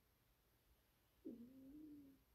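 Near silence, broken about a second in by one faint call just under a second long, which drops in pitch at its start and then holds level.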